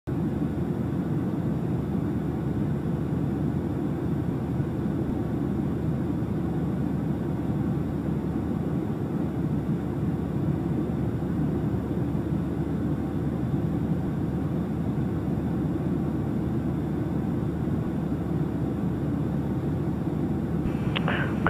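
Steady drone of a Cessna 172 Skyhawk's engine and propeller heard inside the cabin while on approach, even and unbroken with no separate knocks or bumps.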